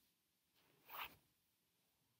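Near silence, broken once about a second in by a short, soft rustle.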